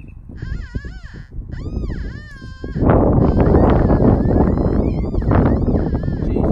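Two short, wavering high-pitched calls in the first couple of seconds. From about three seconds in, a steel digging trowel scrapes and crunches loudly into turf and soil.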